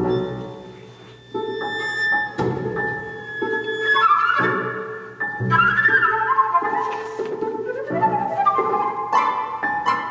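Contemporary chamber music: low notes struck every second or two under high held and sliding instrumental lines, which grow fuller about halfway through.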